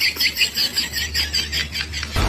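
A high-pitched squeaky chirping, repeating about seven times a second over a low steady hum. It is most likely a comic sound effect laid over the video.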